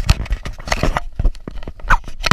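Close handling noise on the camera: an irregular run of knocks and rubbing scrapes as it is moved about and covered.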